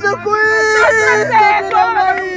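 A woman wailing and sobbing in grief: high-pitched cries that are drawn out and bend up and down in pitch, a mourning lament for a dead mother figure.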